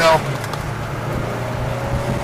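A 2013 Ford Mustang GT's 5.0-litre V8 heard from inside the cabin, running at steady revs in low gear as the car drives an autocross course, a constant drone with no revving up or down.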